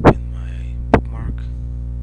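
Steady electrical mains hum in the recording, with two loud sharp clicks about a second apart, the first the loudest.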